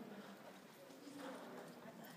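Faint hoofbeats of a Kiger Mustang walking slowly on the dirt footing of an indoor arena.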